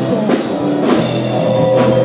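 A rock band playing live, with drum kit hits about once a second under electric bass, and a held note coming in about a second in.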